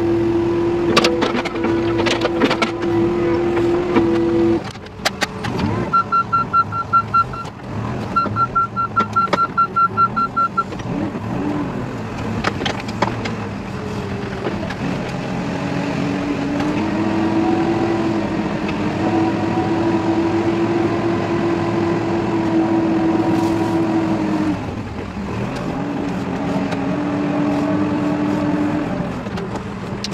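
Heavy-machinery diesel engines running, heard from inside the operator's cab. A steady engine drone with a few clicks is followed by two runs of rapid electronic beeping, then a steady engine drone that rises slightly in pitch and breaks off briefly about five seconds before the end.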